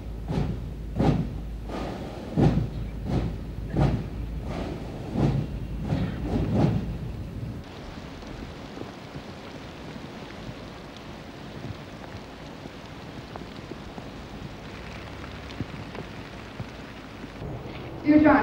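A marching pipe band's slow, regular drumbeat, about one beat every 0.7 seconds over a low hum, for the first seven seconds or so. The sound then cuts to a steady hiss of falling rain.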